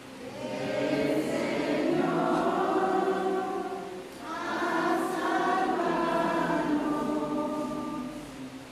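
Many voices singing a church hymn together, in two long phrases with a brief breath about halfway through.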